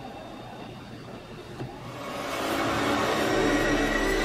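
Dramatic soundtrack swell: low background at first, then from about two seconds in a whooshing rise that grows steadily louder, with a deep drone joining near the end as it builds into ominous music.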